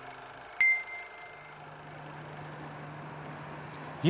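A single bright metallic bell-like ding about half a second in, ringing out for around a second over a faint low steady hum.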